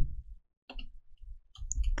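Computer keyboard keys tapped in a few short, irregular clicks, starting a little under a second in: typing a name into a text field.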